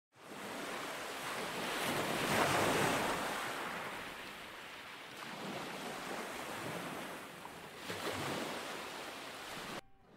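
Ocean waves washing in: a steady surf sound that swells about two seconds in and again near eight seconds, then cuts off abruptly just before the end.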